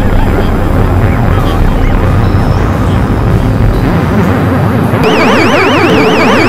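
Experimental electronic synthesizer music: a dense, noisy wash of warbling, gliding synth tones. About five seconds in, a layer of high tones wavering evenly up and down comes in on top.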